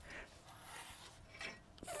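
Faint metal scraping of a hitch pin being pulled out of a bike rack's folding hitch bar, with a small clink about one and a half seconds in.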